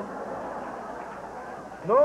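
Audience laughing, a steady spread of crowd laughter, before a man's voice cuts back in near the end.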